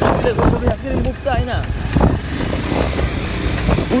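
A motorcycle being ridden on a rough dirt road, its running mixed with heavy wind buffeting on the microphone as a steady low rumble. A voice is heard briefly about a second in.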